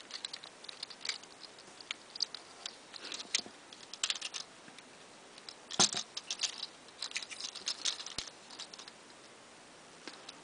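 Small plastic clicks and rattles from a Transformers figure's joints and parts as they are moved and snapped into place by hand. The clicks come in scattered clusters, with the sharpest click about six seconds in.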